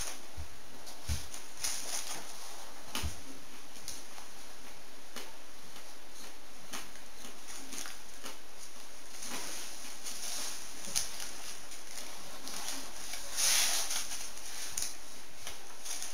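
Faint chewing and mouth sounds of someone eating a polvoró, a crumbly shortbread, over a steady hiss, with a few soft smacks scattered through and a slightly louder cluster near the end.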